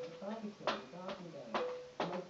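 A person talking, with two sharp knocks almost a second apart from a baby's hands hitting a plastic toy.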